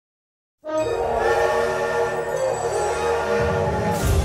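Steam locomotive whistle blowing one long, steady chord, cutting in suddenly about half a second in after silence, over a low rumble.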